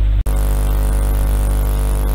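Steady electrical mains hum with a buzzing stack of overtones, picked up in the recording. It cuts out for an instant about a quarter second in, at an edit, then carries on unchanged.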